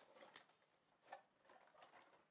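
Near silence, with a few faint clicks and taps of a boxed bobblehead figure being handled and poked out of its packaging.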